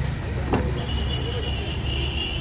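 A car door latch clicks open once about half a second in, over a steady low rumble of road traffic. A thin, steady high tone starts just after the click and holds.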